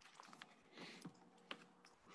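Near silence broken by several faint, scattered clicks and taps over an open meeting microphone.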